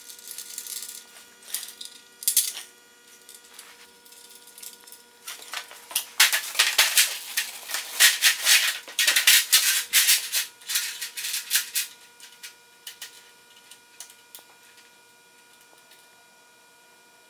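Small loose metal parts rattling and clinking as they are rummaged through by hand, a dense run of rapid irregular clicks that starts about five seconds in and dies away after about twelve seconds.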